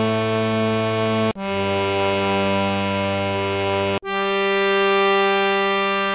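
Harmonium playing the descending scale of Raag Bhoopali in G as long held notes of about two and a half seconds each: Re, then Sa about a second in, then the high Sa an octave up about four seconds in. There is a short break before each new note.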